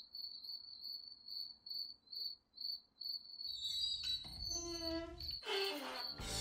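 Quiet crickets chirping, a high short chirp repeating about twice a second. A brief pitched sound with several overtones comes in about four and a half seconds in.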